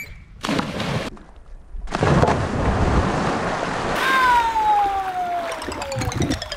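A person jumping into a backyard swimming pool: a short rush of splash noise about half a second in, then a loud, long spell of splashing and churning water from about two seconds in. Over the water near the end, a single whistle-like tone glides slowly down in pitch.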